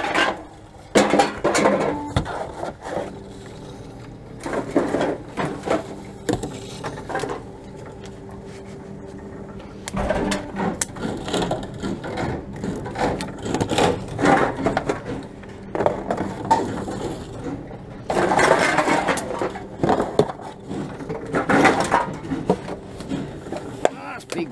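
Empty cans and plastic bottles being fed one at a time into a TOMRA reverse vending machine. Each is marked by a burst of rattling and clattering every few seconds, over the machine's steady low hum.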